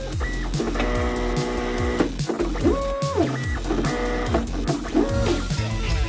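Music with a steady beat, layered with 3D-printer stepper-motor whines. Each whine rises in pitch, holds a steady tone and falls away, several times over.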